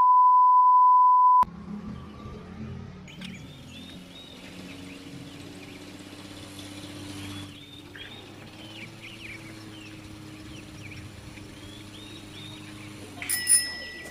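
Test-card beep: a steady, loud 1 kHz line-up tone of the kind played with colour bars, lasting about a second and a half and cutting off suddenly. After it comes a much quieter outdoor background with small birds chirping and a faint low hum. A brief louder burst of clicks comes near the end.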